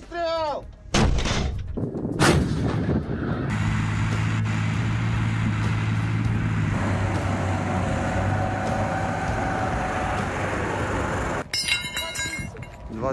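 Two sharp bangs of gunfire or explosions about one and two seconds in. They are followed by a loud, steady rumble of armoured vehicles' engines running, with a low drone under it, that stops abruptly near the end.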